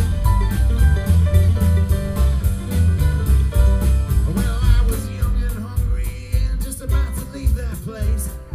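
Acoustic string band playing: upright bass, strummed acoustic guitar and mandolin in a steady rhythm. A man's singing voice comes in about halfway through.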